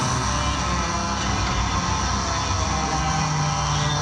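Amplified cellos playing heavy-metal music live, with sustained, held notes.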